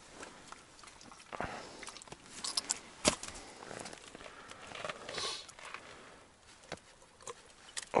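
Scattered small clicks and rustles of hands handling fishing line and gear on the ice. The sharpest click comes about three seconds in.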